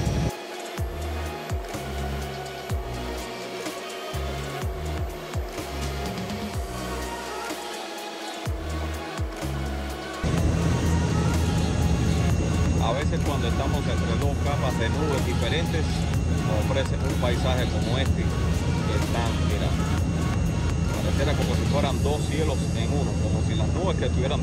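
Steady roar of an airliner in flight, heard inside the cabin from a window seat: jet engines and airflow, starting suddenly about ten seconds in. Before that comes a quieter, choppier stretch with faint steady tones.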